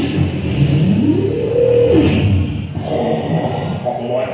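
Beatboxer's vocal sound effects: a low, growling voiced sound with one pitched tone that rises and falls back about a second in, followed by rougher, noisier vocal sounds near the end.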